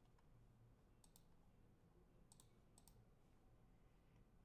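Near silence broken by faint computer mouse clicks, a few quick pairs of clicks, as the list-randomizer button is pressed again and again.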